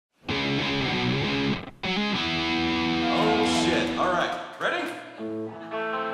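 Rock band playing live, electric guitar to the fore with some distortion. The music cuts in abruptly at the start and dips briefly a little before two seconds in, with a voice heard over it in the middle.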